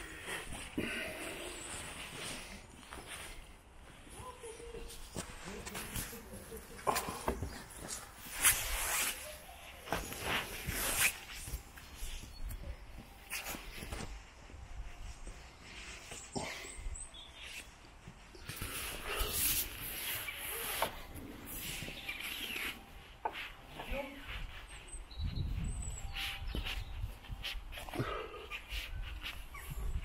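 Saddleback pigs grunting: a run of short, irregular grunts, with faint voices in the background.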